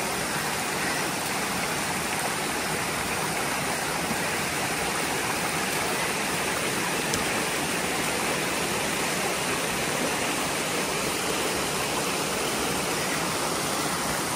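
A shallow mountain stream running over rocks: a steady, even rush of water.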